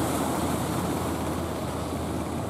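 Steady rushing of sea surf and wind on the microphone, with an even low rumble underneath.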